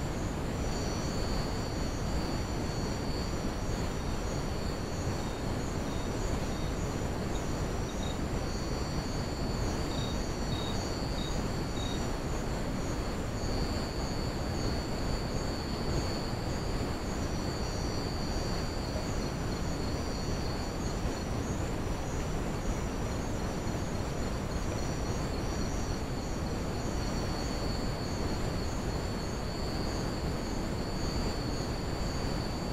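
Night insects such as crickets chirping in several steady, high-pitched pulsing trills, over a constant low hiss.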